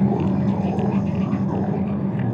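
A steady low drone holding one pitch, with a few faint clicks over it.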